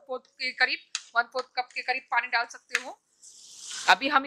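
A woman speaking Hindi for most of the time. Near the end, a hiss rises in level for about a second: the lauki sabzi sizzling in the frying pan as it is stirred.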